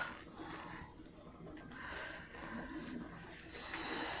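Quiet pause: faint room noise with soft breathing close to the phone microphone.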